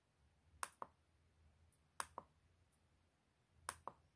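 The push button on a small digital pocket scale is pressed three times, about one and a half seconds apart. Each press gives a faint sharp click with a softer release click just after it, as the scale steps through its weighing units.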